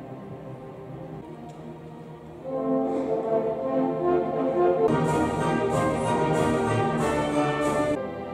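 Symphony orchestra playing live: strings soft at first, then about two and a half seconds in the full orchestra with brass comes in much louder. From about five seconds in, bright accented strokes recur a little under twice a second.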